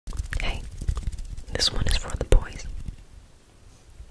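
Whispering close into a microphone, breathy, with soft clicks between the whispers; it trails off about three seconds in.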